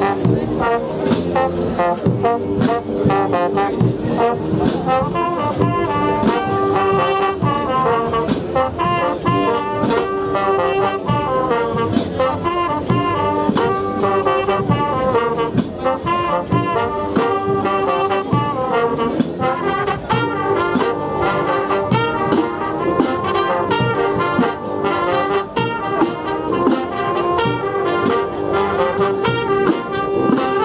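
Marching brass band of trumpets and sousaphones playing a piece live, with a steady beat.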